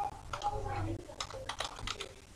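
Computer keyboard keys being typed: several quick keystrokes, most of them in the second half, as a short word is entered.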